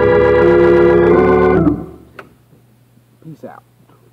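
Organ holding a full sustained chord in D major, its inner voices moving slightly before it is released about a second and a half in. The chord dies away quickly, leaving only a faint steady hum.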